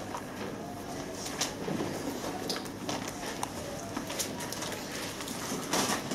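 Bible pages being turned and rustled while people look up a passage: scattered soft paper rustles and light clicks over quiet room noise.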